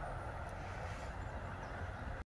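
Steady outdoor background noise with a low, uneven rumble, and a few faint, short, high chirps.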